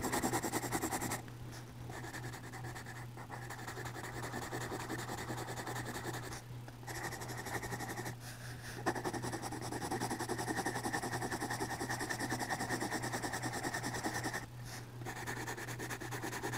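Yellow colouring pencil shading on drawing-pad paper: a light, fast back-and-forth scratching of strokes, broken by a few short pauses where the pencil lifts. A steady low hum sits underneath.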